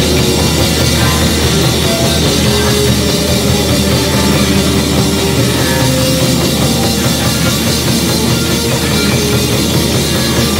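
Live rock band playing loud and steady: electric guitars, electric bass and a Pearl drum kit, with the room's sound mixed in.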